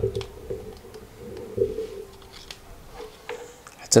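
Faint scattered clicks and scrapes of a small knife blade prying at the seam of a plastic wireless-earbud charging case to pop the shell open, with a faint steady tone underneath.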